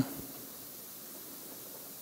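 Faint steady hiss of room tone and recording noise, with no distinct sound event.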